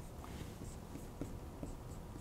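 Felt-tip marker drawing on a whiteboard: a few faint, short strokes.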